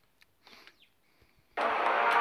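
Near silence with a few faint clicks, then background music starts abruptly about one and a half seconds in and carries on loudly.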